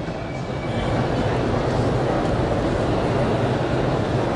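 Steady, fairly loud rumbling background noise with no speech, even throughout.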